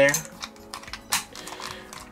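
A few sharp plastic clicks as small alien figures are pressed and locked into a toy Omnitrix launcher watch.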